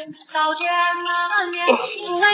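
Background music: a high singing voice holding long, steady notes.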